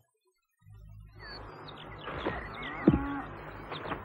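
Birds chirping and a cow mooing once about three seconds in, over a low steady hum, coming in after a brief silence.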